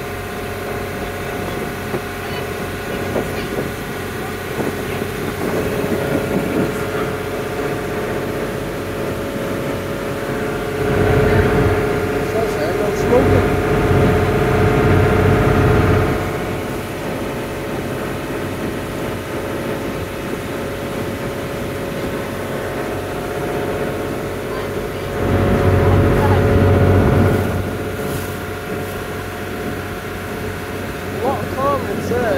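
Charter boat's engine running steadily under way, with the wash of its wake. It grows louder for a few seconds about a third of the way in, and again later.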